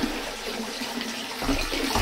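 Water running and splashing steadily from a submerged pond filter's outflow at the surface of a hot-tub fish pond. A couple of soft low bumps come about one and a half seconds in.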